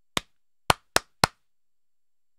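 Hand claps: four sharp single claps, the first just after the start, then three in quicker succession about a quarter second apart.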